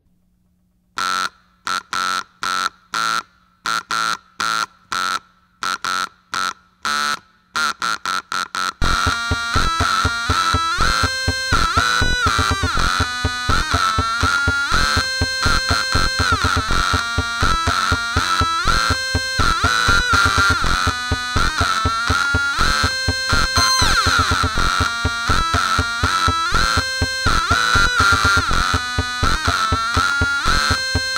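LoBlast Bleepler variable-frequency tone generator played as a little song: single pitched beeps keyed on and off about twice a second, pitch set by ear, then from about nine seconds in several Bleepler parts layered at once into a dense, busy tune that sounds like a video game soundtrack.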